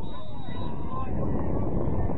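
Wind buffeting the microphone with a steady rumble, over distant shouts and calls from players on the pitch.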